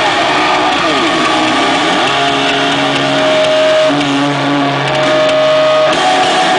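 Loud live rock band playing through a concert PA: heavily distorted electric guitars slide down in pitch and back up about a second in, then hold sustained notes over a dense wash of sound.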